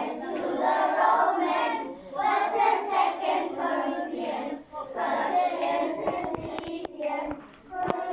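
A group of children singing together in unison, phrase after phrase, with a few short sharp knocks about six to seven seconds in.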